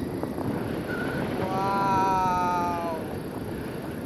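Wind rushing over the camera microphone in flight under a tandem paraglider. About a second and a half in, a person lets out one long vocal call that falls slightly in pitch.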